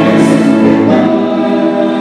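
Choral music: a choir singing sustained notes, loud and steady, with the chord changing about a second in.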